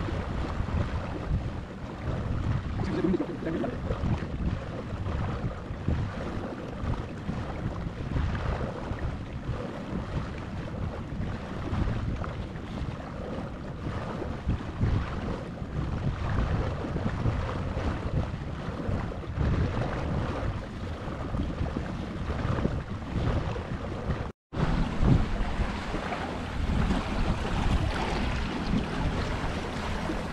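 Wind buffeting the microphone and water rushing and splashing along the hull of a Scruffie 16 wooden sailing dinghy under way, steady with gusts. The sound cuts out for an instant about three-quarters of the way through.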